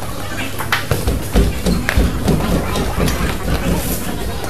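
Indistinct voices and chatter of people around a boxing ring, with a few dull low thumps in the middle.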